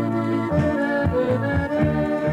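Accordion music: an instrumental passage of a Polish folk-style song, with held chords over a repeating bass line.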